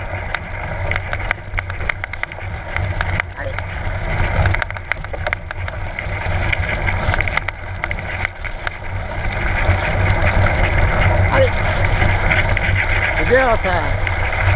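Mountain bike towed by a dog, rolling fast over a rough, muddy dirt track, with wind on the microphone and frequent clicks and rattles from bumps. It grows louder about two-thirds of the way through.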